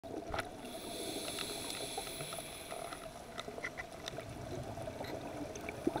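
Underwater coral-reef ambience heard through an underwater camera: scattered crackling clicks over a steady hiss. A diver's sharp inhale through a scuba regulator comes right at the end.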